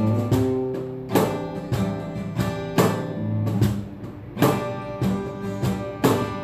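Acoustic guitar strummed in a steady rhythm, its chords ringing between strokes, with no singing.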